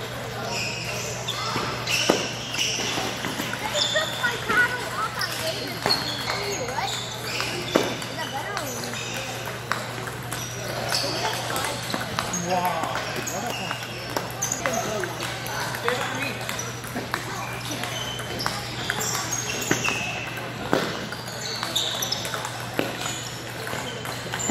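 Table tennis balls clicking off paddles and tables in rapid, irregular strokes during rallies, several tables at once, over the steady chatter of voices in a large hall.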